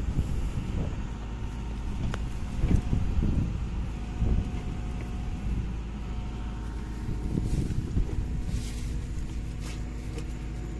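Diesel engine of heavy machinery running steadily with a low rumble, with a few short knocks about two to three seconds in.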